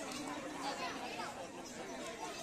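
Several faint voices of players and onlookers talking and calling at once, overlapping chatter with no single clear speaker.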